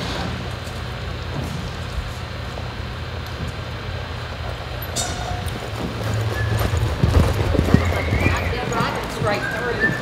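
A horse's hoofbeats on the soft dirt of an arena as it lopes, starting about six seconds in, over a steady low hum.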